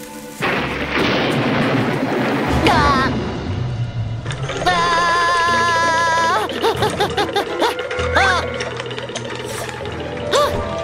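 Cartoon sound effects over background music. A broad rushing whoosh fills the first few seconds. About five seconds in comes a cartoon character's long, wavering scream of fright, followed by short yelps near the end.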